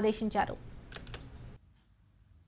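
A woman's news-reading voice ends about half a second in. A few faint clicks follow, then the sound cuts to dead silence about one and a half seconds in.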